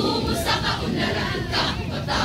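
A speech choir of many voices reciting together in unison, the syllables spoken in loud rhythmic group bursts.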